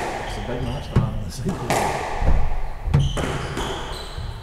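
Squash rally: several sharp knocks of the ball off racket and walls, ringing in the hard-walled court, with shoes squeaking on the wooden floor.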